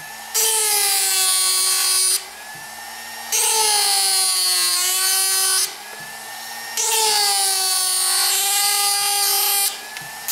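Reciprocating power carver driven by a Foredom flex-shaft motor, its gouge cutting into a wooden block. It runs in three rackety bursts of about two seconds each, with short pauses between, and its pitch dips and recovers within each burst.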